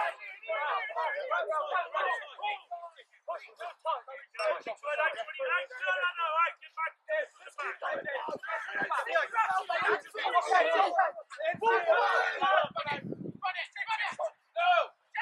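Indistinct voices talking and calling almost continuously, with short pauses.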